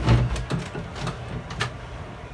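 Knocks and clicks of things being handled: a low thump at the start, then about five light clicks over the next second and a half.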